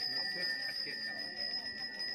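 A Balinese priest's handbell (genta) ringing continuously during prayer, a steady high ring without pause, over a low murmur of voices.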